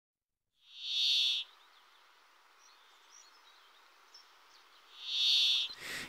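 Brambling song: two drawn-out, buzzy, wheezing notes, each just under a second long, about four seconds apart. It is a dry rasp likened to a small circular saw heard from afar.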